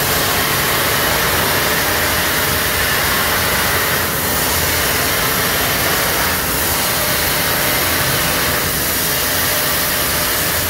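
CNC plasma cutting machine at work, giving a steady, even hissing noise with no breaks.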